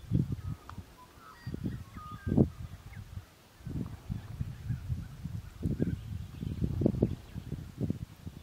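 Wind buffeting the microphone in irregular gusts, with faint birds chirping in the background, mostly in the first half.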